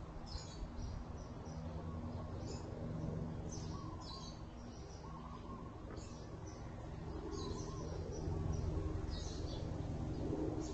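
Small birds chirping outdoors, short high chirps in little runs every second or two, over a steady low hum.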